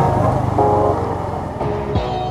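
Yamaha MT-15's single-cylinder engine running steadily at low road speed, with road and wind noise around it. Background music with held notes starts to come in about half a second in.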